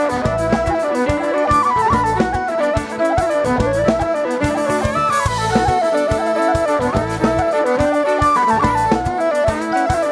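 Live Celtic fusion band playing an instrumental tune: a whistle carries an ornamented melody in repeated falling phrases over drums, bass and electric guitar.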